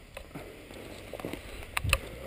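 A dirt bike and its rider going down on a muddy trail: a few scattered knocks and scrapes, then a heavy thump near the end as they hit the ground.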